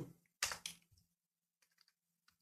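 Two computer keyboard keystrokes about half a second in, then near silence with a few very faint clicks.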